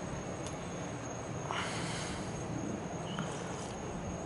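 A man sipping hot broth from a spoon: soft slurps and breaths, the clearest a little over a second and a half in. Behind it runs a steady low hiss with a thin high steady tone.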